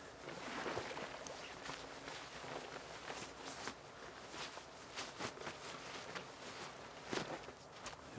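Clothes rustling as a man pulls off his jacket and shirt, with feet shifting in leafy undergrowth: soft, scattered rustles and small crackles.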